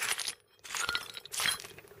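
Shards of broken ceramic floor tile clinking and scraping against each other as they are shifted, in a few short clatters with a brief pause about half a second in.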